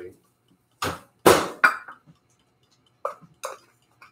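A few short clunks and knocks from a microwave door and a small bowl of melting chocolate wafers being taken out, the loudest about a second in, then two lighter knocks near the end.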